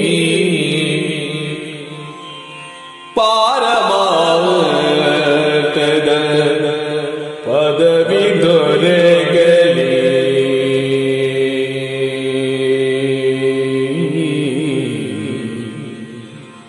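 Yakshagana bhagavathike: a male voice singing Kannada verse in long, ornamented, wavering lines over a steady drone. One phrase fades out, a new one starts abruptly about three seconds in and another about halfway, and the sound fades near the end.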